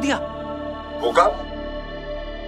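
Sustained dramatic background music with held tones, with a brief sharp sound about a second in.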